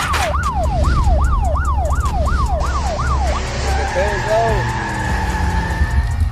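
Police siren in a yelp pattern, its pitch sweeping up and down about three times a second over a deep bass, in the music video's audio track. About halfway through the yelp stops and two steady high tones hold, with a few short arched tones.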